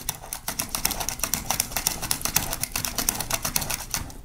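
Cucumber slid rapidly back and forth across the Titan Peeler's dual blade, locked on its mini mandolin slicing board, making a fast run of sharp slicing clicks, several a second, as thin slices come off.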